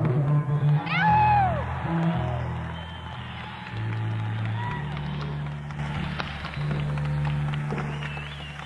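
Electric bass and electric guitar tuning up on stage, heard on an audience cassette recording in a concert hall: long, steady low bass notes changing pitch every second or two, with guitar notes bent up and back down over them, the loudest swoop about a second in.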